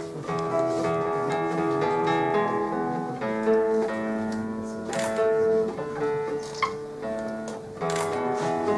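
Handmade classical guitar with a cedar double top and a sound port, played fingerstyle: plucked nylon-string notes and chords ringing over one another.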